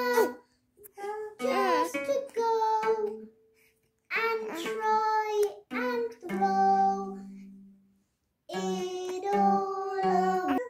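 Singing in short phrases with brief gaps between them, over a strummed acoustic guitar. In the middle, a low guitar note rings out and fades.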